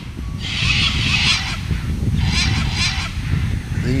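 Birds giving harsh, screechy calls in three bursts of about a second each, over a steady low rumble.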